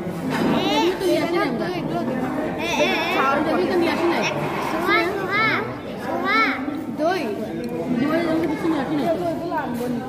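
Children's high-pitched voices talking and calling out over background chatter of other people in a large room.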